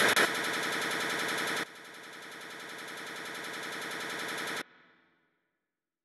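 Rapid machine-gun fire sound effect, stepping down in loudness twice, slowly swelling again, then cutting off suddenly past the middle, followed by silence.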